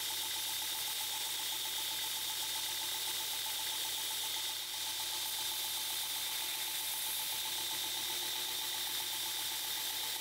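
Belt grinder running steadily while a bevel is ground onto the front of knife-handle scales held against the belt.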